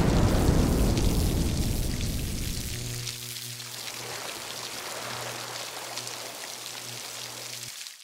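Electric-effect logo sting: a loud crackling static burst that fades over about three seconds, then a steady low electrical hum like a buzzing neon sign, cutting off suddenly just before the end.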